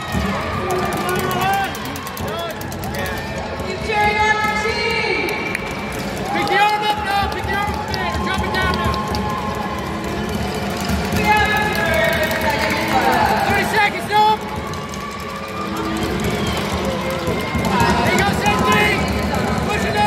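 Several voices calling out and talking over one another in a large, echoing hall, with music playing underneath.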